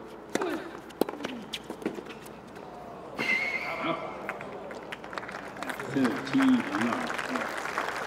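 Tennis rally: several sharp pops of racket strings striking the ball over the first three seconds. The point ends about three seconds in and the crowd applauds.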